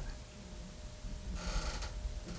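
Quiet room tone with a low hum, and a short breath-like hiss about a second and a half in.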